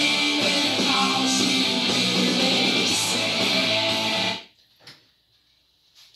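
Electric guitar playing a chorus riff, cutting off suddenly about four and a half seconds in.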